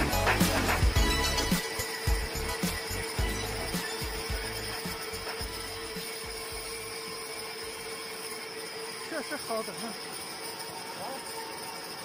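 Background music fading out over the first few seconds, leaving the steady hum of a metal lathe cutting grooves into a large metal cylinder.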